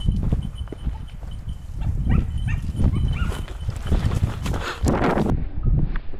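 Hunting dog giving a run of short, high yelps in the middle, typical of a dog on the trail of a hare. Underneath is a heavy, constant low rumble of walking, with a louder rustling burst about five seconds in.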